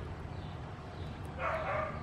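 A dog barks once in the background, a short pitched call about one and a half seconds in, over a steady low hum.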